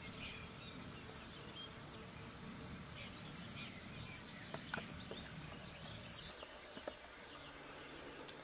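Crickets chirring in a steady high trill, with a second, higher insect buzz coming in three stretches in the middle. Under it a low rumble drops away about six seconds in, and there are a few faint clicks.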